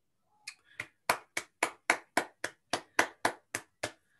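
Hand clapping: one regular run of about thirteen claps, about four a second, starting about half a second in.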